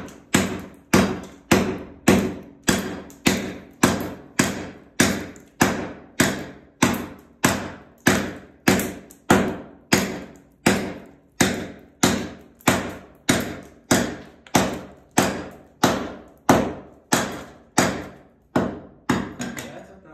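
A hatchet chopping at old VCT vinyl floor tiles, its blade striking under and through them against the ceramic mosaic tile beneath to knock them loose. The strikes come in a steady rhythm of about two a second.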